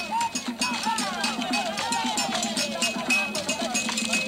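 Drums played in a fast, steady beat while a group of voices sings and calls over it, the voices rising and falling in pitch.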